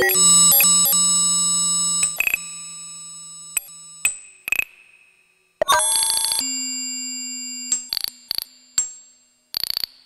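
Serge modular synthesizer playing an improvised patch of pinged Variable Q filter voices and FM'd oscillators run through ring modulation, wave multipliers and a frequency shifter. Two sharp attacks, at the start and a little past halfway, each ring out as a cluster of high metallic tones over a low held note and fade slowly, with shorter clicks and pings between.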